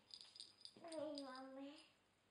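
A young child's voice: one drawn-out vocal sound about a second long in the middle, preceded by a quick run of light high clicks.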